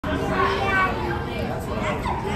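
Indistinct chatter of several voices, with children's voices among them.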